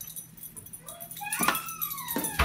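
Small dog whimpering: a few thin, high whines that slide down in pitch in the second half, with a light click about one and a half seconds in.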